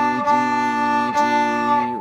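Viola bowed on its open D string in separate, even strokes, about one a second, in a beginner's string-crossing exercise. The last stroke stops near the end.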